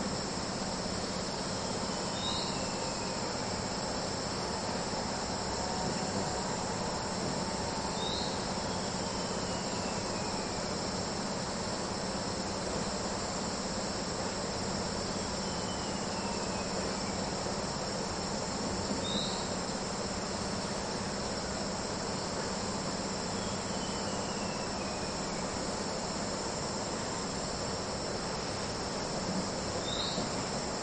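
A steady, high chorus of chirring insects over a low, even hum. A short, faint call that falls in pitch comes four times, several seconds apart.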